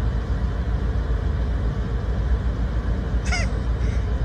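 Steady road and engine noise heard from inside a car cabin, with a deep rumble. A short high-pitched cry sounds about three seconds in.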